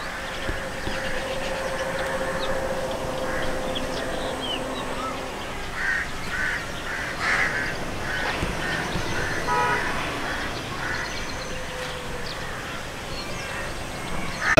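Outdoor farm ambience with birds calling, including a run of short repeated calls midway.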